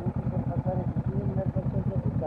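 Honda CB500X parallel-twin engine idling through an aftermarket GPR exhaust, a steady, even low pulse while stopped.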